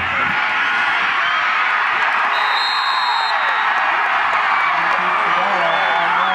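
Stadium crowd at a high school football game cheering and shouting steadily, with a high steady tone for about a second near the middle.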